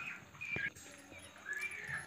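Faint animal calls: three short high-pitched calls spread over two seconds, with a light knock about half a second in.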